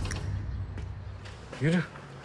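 A low background rumble fading away over the first second and a half, then a man speaks one short word.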